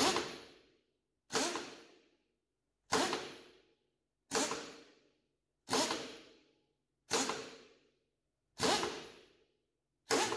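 A pneumatic power drawbar is cycled seven times on its in/out button. Each press gives a short, sharp rush of air that dies away within about half a second, about one every 1.4 seconds. The repeated cycling draws oil through the in-line lubricator to prime it.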